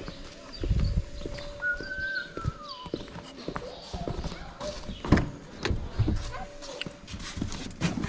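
Scattered knocks and thumps about a second apart, like footsteps and objects being handled, with a small child's voice briefly.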